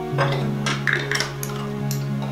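Background music with held notes, over which a table knife clinks and scrapes against dishes a few times.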